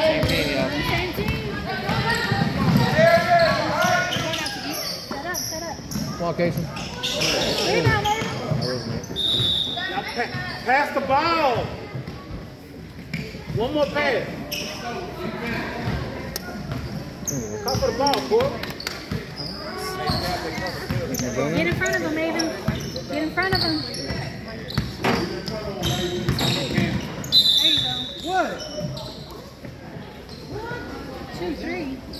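Basketball bouncing on a hardwood gym floor amid players' and spectators' shouts, echoing in a large hall. A short high whistle sounds about nine seconds in and again near the end.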